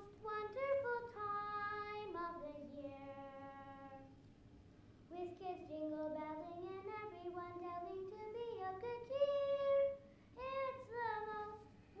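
A high voice singing a slow melody in long held notes, with short breaks about four seconds in and again near ten seconds.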